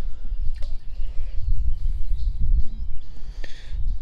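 Outdoor ambience: a steady low rumble on the microphone, with faint bird chirps above it.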